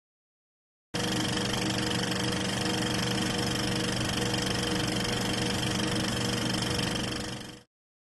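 Film projector sound effect: a steady mechanical whirring and rattle that starts abruptly about a second in and fades out near the end.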